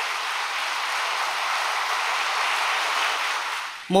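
Large audience applauding, a steady clapping that dies away near the end.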